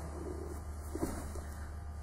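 Steady low hum with faint shuffling of bodies moving on judo mats and a light knock about a second in.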